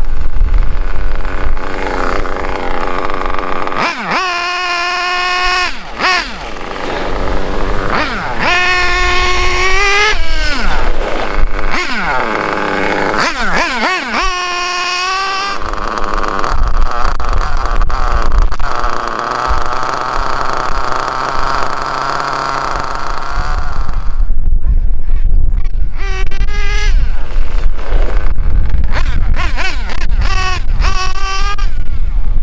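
Hobao Mach two-stroke nitro engine in an RC truggy revving in repeated bursts as the car is driven, the pitch rising and falling through the rev range without holding full throttle, as the break-in procedure calls for. There is a steadier stretch of running in the middle.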